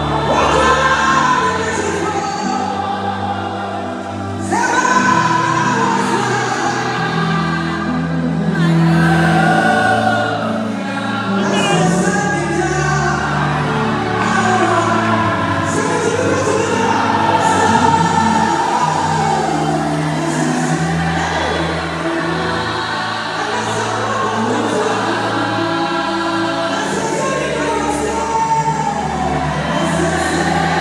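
Live gospel music: a lead singer with many voices singing together over a band with held bass notes, played loud through the hall's sound system.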